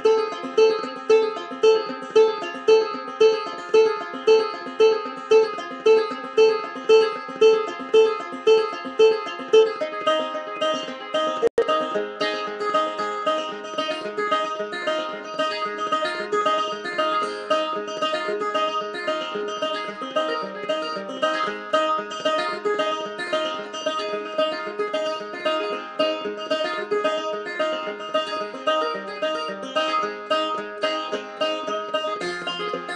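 Six-string banjo-guitar fingerpicked solo. For about the first third it plays a steady, evenly repeated note pattern, then moves into a busier melody over a held bass after a split-second dropout.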